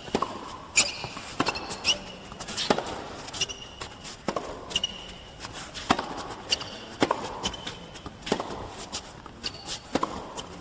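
Tennis rally on an indoor hard court: sharp racket strikes on the ball about every second and a half, with short high sneaker squeaks on the court surface between shots.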